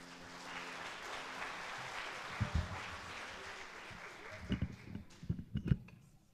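Audience applause that swells, then dies away over a few seconds, followed by several short low thumps near the end.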